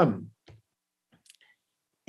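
A man's voice says one word and stops, then a few faint, short clicks fall in an otherwise near-silent pause, one about half a second in and a small cluster around the middle.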